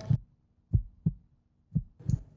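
Heartbeat sound effect: low, short thumps in lub-dub pairs about a second apart, laid on for suspense.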